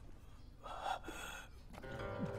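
A man's short breathy gasp about a second in, with no pitch to it. Plucked-string music comes in at the very end.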